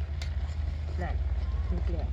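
Steady low roar of a high-pressure gas burner under an aluminium cooking pot, with a ladle stirring the stew and a short click just after the start.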